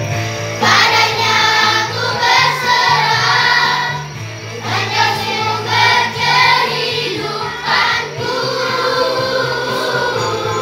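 Children's vocal group singing an Indonesian Christmas song together over instrumental accompaniment, the voices coming in about half a second in.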